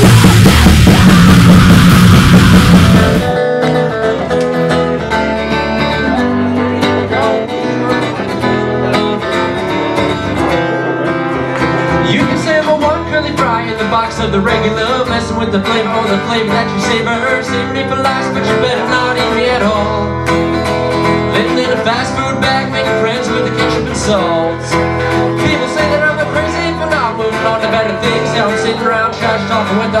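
Acoustic guitar strummed and picked through a PA, playing a song's instrumental intro. The first three seconds are a loud, harsh, distorted burst.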